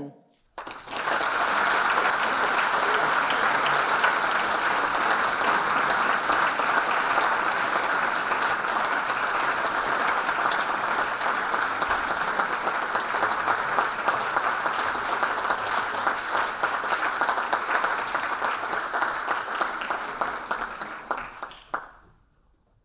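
Audience applauding: many hands clapping, starting just after the beginning and going on steadily for about twenty seconds before fading away near the end.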